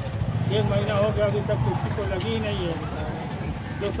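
Indistinct talking over a steady low rumble.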